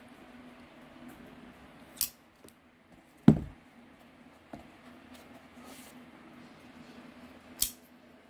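Folding knives being handled: a sharp metallic click about two seconds in, a louder knock a little after three seconds, and another snap near the end as a Kershaw Leek's blade is flicked open.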